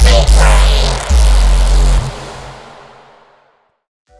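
End of a neurobass demo track: a heavy melodic synth bass, the '7th bass' made in Serum, plays deep sub-bass notes with a gritty top. It cuts off about two seconds in, leaving a noisy tail that fades out to silence.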